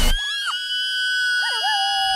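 Excited, high-pitched screaming from cartoon teenage girls: one long held shriek. A second, lower voice joins about one and a half seconds in with a wobbling rise, then holds a slowly falling note.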